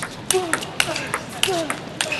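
A table tennis rally: a celluloid ball struck back and forth, making sharp clicks off bats and table at about three to four a second.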